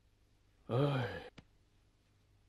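A man's short, exasperated sighing exclamation, "hoei!", its pitch dropping and then rising again, followed by a faint click.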